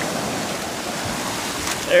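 Shallow surf washing in over sand at the water's edge: a steady rush of foamy water.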